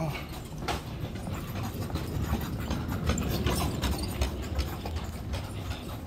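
Footsteps on a hard tile store floor, with irregular knocks and rubbing from a handheld phone over a low rumble.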